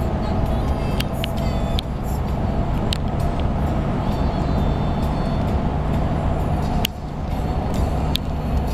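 Road and engine noise heard from inside a moving car's cabin, with music from the car stereo underneath and a few short clicks.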